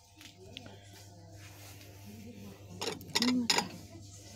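A glass dish being picked up from among stacked dishes on a shop shelf: three or four sharp clinks close together about three seconds in, over a steady low hum.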